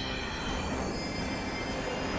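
Cartoon sound effect of two robot trains speeding away: a steady rushing rumble with a faint high ringing above it.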